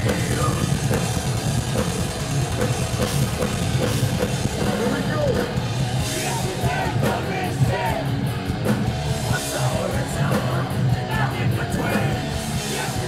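Heavy metal band playing live at full volume, with distorted guitars, bass and drums, heard from within the crowd. Vocals come in over the band in the second half.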